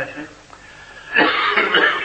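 A man coughs, a rough, noisy burst starting about a second in after a short pause.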